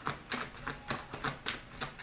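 A deck of tarot cards being shuffled by hand: a quick run of sharp card slaps and clicks, about four or five a second.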